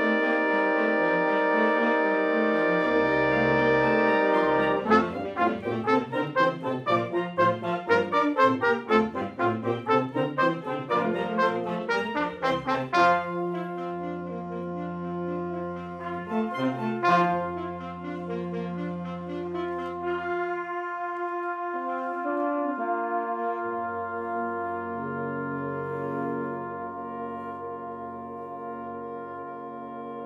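A wind ensemble of woodwinds and brass playing: a loud held chord, then a stretch of short repeated notes about two a second, then softer sustained chords over low brass that thin out near the end.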